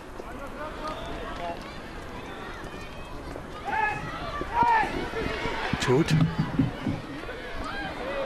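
Football players shouting to each other on the pitch during open play, with a couple of sharp ball kicks about six seconds in.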